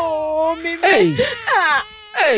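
A person's voice crying in a high, drawn-out wail. One note is held, then come steep falling wails in the second half.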